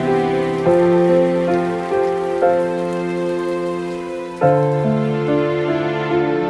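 Rain falling, with slow, soft background music whose chords change every second or two; the rain fades away near the end.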